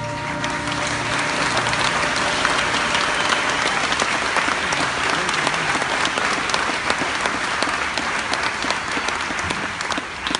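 Large theatre audience applauding, the clapping swelling as the orchestra's last held chord dies away at the start and thinning out near the end.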